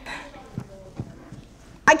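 Quiet room tone with a few faint, soft knocks about half a second apart.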